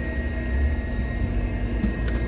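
Car cabin noise while driving slowly in city traffic: a steady low rumble of engine and road with a faint steady hum that stops near the end.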